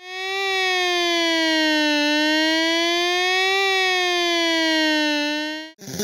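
Siren sound effect in a slow wail. The pitch falls over about two seconds, climbs for about a second and a half, falls again, and then cuts off abruptly just before the end.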